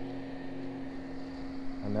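Bow-mount electric trolling motor running with a steady hum.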